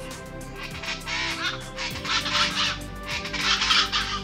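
Background music with steady held notes, over which come three loud, harsh bird calls, about one a second.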